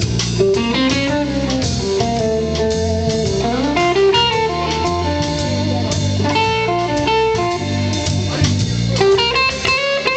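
Live band music: an electric guitar playing over a drum kit, with one note sliding upward in pitch about three seconds in.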